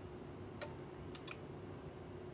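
Faint clicks of colored plastic brake pad gauges being handled as the yellow gauge is picked out and slipped into place at the brake caliper: one click about a third of the way in, then two in quick succession just past halfway.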